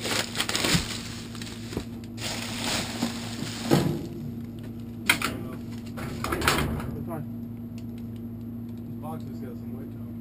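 Clear plastic trash bags full of plastic pill bottles and packaging rustling and clattering as a reacher-grabber pokes and pulls through them, in irregular bursts that die down after about seven seconds.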